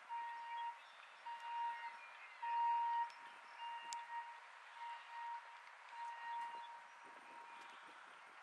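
A single high-pitched tone sounding again and again in short and longer stretches, always at the same pitch, over a faint steady outdoor hiss.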